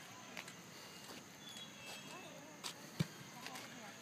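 Quiet outdoor ambience with faint distant voices, and a single short knock about three seconds in.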